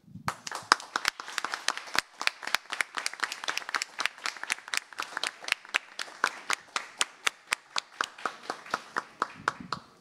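Applause from a small group in a hearing room: hand claps, each one distinct, keeping up steadily and thinning out near the end.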